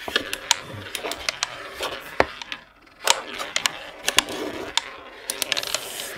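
A rally in the Klask board game: the ball clacks off the strikers and the wooden walls while the strikers, steered by magnets under the board, scrape across the playing surface. Irregular sharp clicks over a sliding rasp, with a brief lull about two and a half seconds in.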